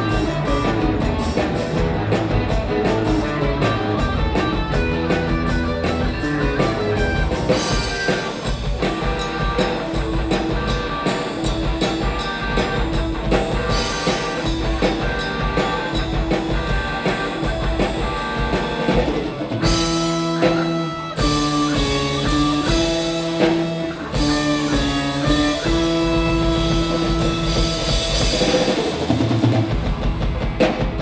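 Live rock band playing: electric guitars, bass guitar and drum kit, with a tambourine. About two-thirds of the way through the drumming drops back and the guitars hold long notes.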